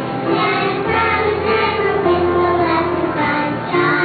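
A small group of children singing together in a church service, holding each note of the song, with a short breath break near the end.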